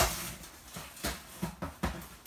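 Cardboard shipping box being handled and opened by hand: a sharp knock at the start, then a few lighter knocks and rustles.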